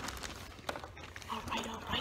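German Shepherd dog close to the microphone making short vocal sounds, most of them in the second half.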